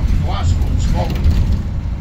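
Steady low rumble of a moving double-decker bus's engine and road noise, heard from inside the bus, with brief snatches of voices.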